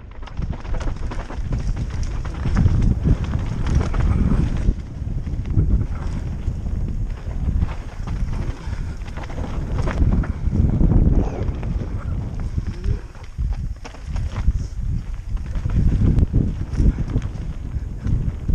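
Wind buffeting an action camera's microphone, together with mountain-bike tyres rolling over a dirt trail and the bike rattling over bumps on a fast descent. The rumble rises and falls in surges, with scattered sharp clicks.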